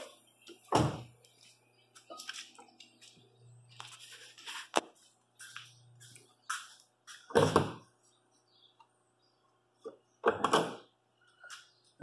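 Scattered dull thumps and light clunks from a minivan's door and hood being handled on a shop lift, the loudest about a second in and again about seven and a half seconds in, with small knocks between them.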